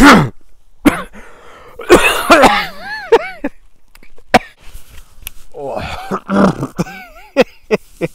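A man coughing and clearing his throat in several bouts, mixed with laughter.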